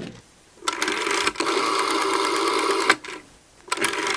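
Telephone ringing: a long buzzing ring of about two seconds, a short pause, then a second ring starting just before the end.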